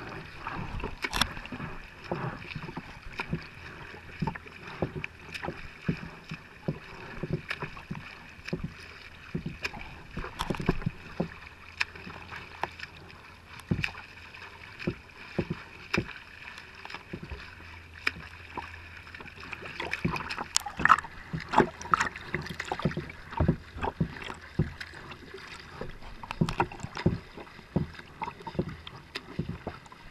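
Choppy water slapping and splashing close to a kayak-mounted camera in quick, irregular splashes, mixed with a swimmer's freestyle arm strokes. A louder run of splashes comes a little past the middle.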